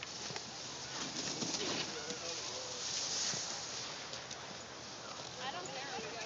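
Skis sliding over packed, tracked snow: a steady scraping hiss that swells about a second in and stays louder through the middle, with faint voices in the background.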